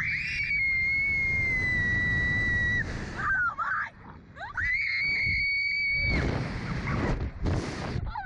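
Two girls screaming on a slingshot ride as it flings them upward: one long high scream held for about three seconds, a break with short cries, then a second long high scream about four and a half seconds in. Wind rumbles on the ride-mounted microphone underneath.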